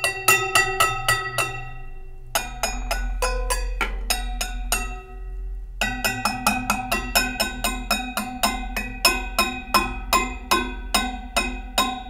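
Metal tines of wire head massagers mounted on a homemade box instrument, struck rapidly over and over with a wooden dowel, about five strikes a second in three runs with short pauses. Each strike gives a bright metallic ringing at several pitches at once, probably because striking one tine sets neighbouring tines vibrating.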